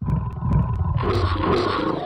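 A loud sound effect under a text card: a deep rumble with scattered sharp clicks that starts suddenly, then brightens into a harsher, fuller noise about a second in.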